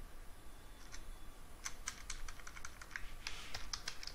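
Computer keyboard typing, faint: a single keystroke about a second in, a quick run of about ten keystrokes from about one and a half seconds in, then a few more near the end.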